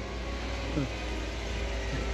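A pause in a man's speech, filled by a steady low hum, with a faint, brief bit of voice a little under a second in.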